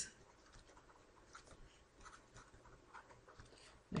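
Faint scratching and light tapping of a stylus writing on a tablet screen, in a series of short, scattered strokes.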